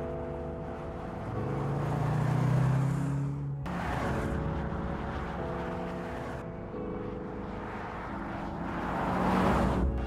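Background music with held chords over a car driving by on the road: a rushing pass that builds and cuts off sharply about three and a half seconds in, and another that swells near the end. The car is the Mercedes-AMG C 63 S E Performance estate.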